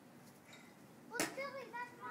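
Quiet outdoor background, then a sharp click a little over a second in, followed by a child's high voice speaking.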